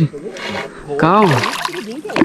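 Large hooked payara (cachorra) splashing and thrashing at the water's surface beside a kayak, with a man's drawn-out voice calling out about a second in.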